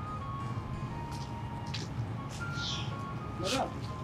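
Soft background film score: a simple electronic melody of thin single notes stepping downward in pitch, over a low steady bed.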